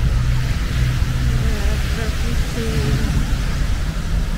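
Busy street noise: a heavy, steady low rumble of traffic and wind on the microphone, with faint voices in the background.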